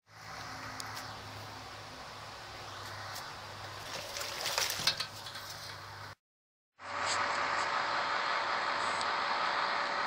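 Sweet wort running from a sparge hose into a stainless steel boil kettle, a steady splashing hiss, with a few light knocks about four to five seconds in. The sound drops out briefly about six seconds in and comes back louder and steadier.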